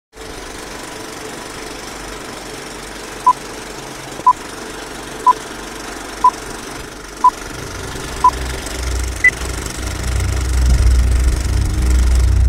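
Old-film leader countdown sound effect: a steady projector-style hiss and rattle under six short beeps, one a second, then a single higher-pitched beep. A low rumble swells over the last few seconds.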